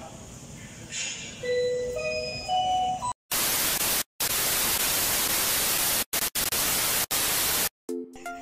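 Television static sound effect: a loud, even hiss lasting about four and a half seconds, cut off briefly a few times. Just before it, a short run of tones steps upward in pitch.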